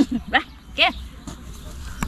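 Speech only: a few short spoken words or exclamations, with faint outdoor background noise between them.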